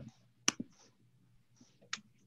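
Two sharp clicks about a second and a half apart, over faint room tone.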